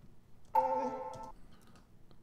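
A single electronic note from the computer's audio, starting suddenly about half a second in, held for under a second and then fading away.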